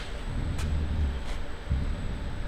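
Low, steady background rumble with a few faint clicks.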